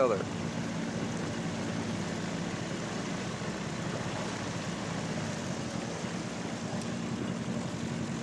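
Tiller-steered outboard motor on a small aluminium fishing boat, running at a steady low trolling speed: an even low hum with a noisy wash over it.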